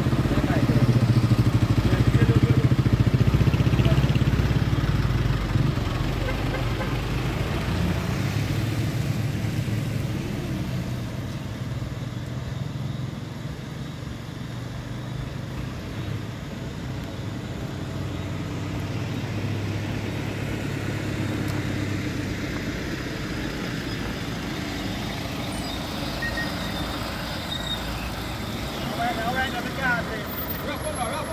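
Road traffic: vehicle engines running in a slow-moving line, a steady low drone that is loudest in the first few seconds and then eases off.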